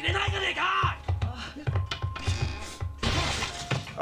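Anime soundtrack: background music with a pulsing beat under Japanese dialogue, scattered sharp hits, and a sudden crash-like noise burst about three seconds in.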